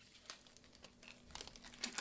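Faint rustling and crinkling of surgical gloves being pulled onto the hands, a scatter of small rustles that grows busier in the second second.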